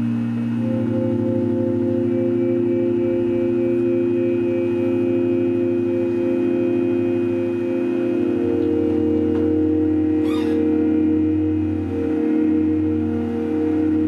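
Instrumental intro of a song played live: sustained, slowly shifting chords of long held notes, one of them gently pulsing. The chord changes about eight seconds in.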